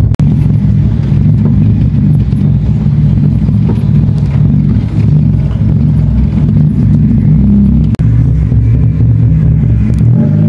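Car engine and road rumble heard from inside the cabin while driving, a steady low drone that stays loud throughout. It breaks off for an instant twice, just after the start and about eight seconds in.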